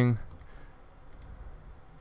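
Faint, sparse computer mouse clicks, a couple about a second in, over quiet room tone.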